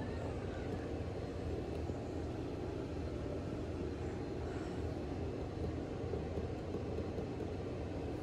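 ThyssenKrupp Endura MRL hydraulic elevator car travelling: a steady low rumble of the ride heard from inside the cab.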